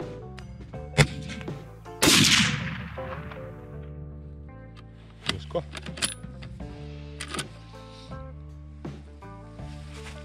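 A single shot from a scoped bolt-action hunting rifle about two seconds in, loud and dying away over a second or so, after a sharp click a second earlier. A few seconds later come quick metallic clicks as the bolt is worked to eject the spent case.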